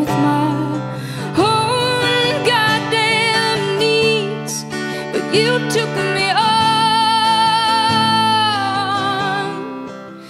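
A woman singing, her pitch wavering with vibrato, over a strummed acoustic guitar; she holds one long note from about six seconds in to almost the end.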